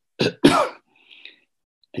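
A man clearing his throat: two short bursts close together, the second one longer.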